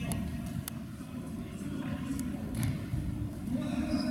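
Futsal ball being kicked on a hard sports-hall floor: a few sharp knocks in the first half and near the end. They sit over a steady low hall rumble with players' distant calls.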